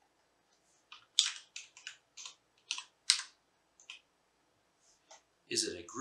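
Typing on a computer keyboard: about a dozen separate key clicks at an uneven pace, most of them between one and four seconds in, with a couple more just before a voice comes in near the end.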